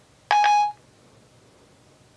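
Siri's electronic chime from an iPhone speaker: one short pitched tone, about half a second long, signalling that Siri has stopped listening and is working on the spoken question.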